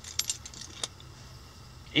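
A few light clicks and clinks in the first second, over a low steady hum inside a vehicle cab.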